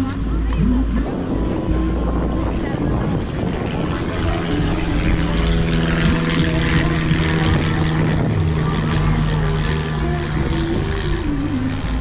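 A small propeller aircraft passing overhead, its engine a steady low drone that is strongest through the middle of the stretch, with wind rumbling on the microphone.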